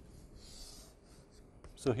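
Chalk drawn along a blackboard in long strokes, a faint scratchy rubbing that stops about a second in.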